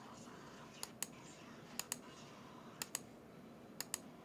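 Faint, sharp clicks in pairs, about one pair a second, evenly spaced over quiet room noise.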